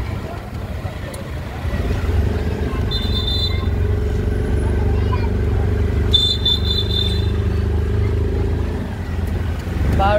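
Motorcycle engine of a tricycle, heard from inside its sidecar, running with a steady low rumble that picks up and grows louder about two seconds in as it gets under way. Two short, high-pitched beeps sound at about three seconds and again around six seconds.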